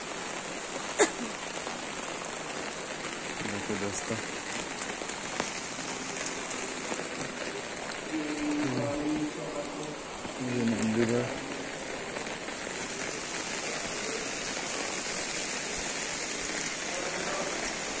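Heavy rain falling steadily, heard from under an umbrella, with a sharp click about a second in.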